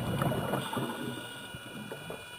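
Scuba diver's exhaled bubbles from the regulator, heard underwater: a bubbling burst loudest in the first second that tails off over about a second and a half.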